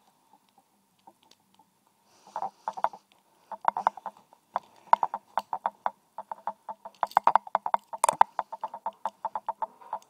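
A lock pick clicking and scraping against the pins of a Master Lock padlock, several small sharp ticks a second. The ticks start about two seconds in and come thickest from about three and a half seconds in, with the loudest a little after eight seconds.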